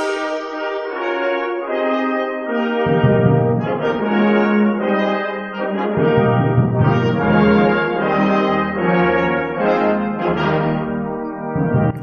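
Wind ensemble playing held chords led by trumpets and other brass. Low instruments, baritone saxophone among them, come in underneath about three seconds in and fill out the sound around six seconds.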